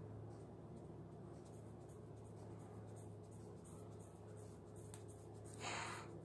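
Small scissors working slowly through a thick ponytail of hair: faint scratchy snips and crunching over a steady low hum, with a short louder rush of noise near the end.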